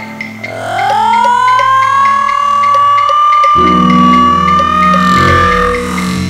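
Electronic synthesizer music: a synth tone glides upward about a second in and then holds high over a ticking pulse of about three a second. A low bass drone enters a little past halfway.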